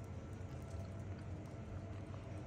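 Faint outdoor background with a low steady rumble and a few soft ticks; no distinct event.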